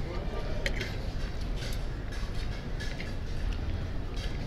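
Metal fork and spoon clinking and scraping against a plate as curry-soaked roti is cut, a few short sharp clicks over a steady low background rumble.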